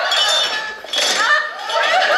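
Cups and crockery clinking on a tea trolley, in short ringing strikes, with laughter coming in near the end.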